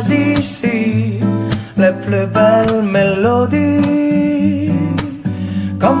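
Live acoustic song: two acoustic guitars strummed together under a melodic vocal line with long held, gliding notes, and a sung word near the end.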